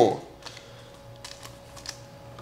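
A few faint, light clicks and ticks from a trading card being handled in the fingers, over a faint steady hum.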